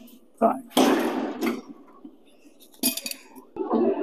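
Metal clinks and clanks of gym equipment, irregular, with a sharp clank near three seconds in.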